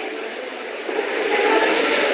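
Steady background hiss, with a voice coming in faintly about a second in as it grows louder.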